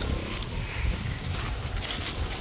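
Wind buffeting the microphone in a steady low rumble, with a couple of footsteps on a grassy path in the second half.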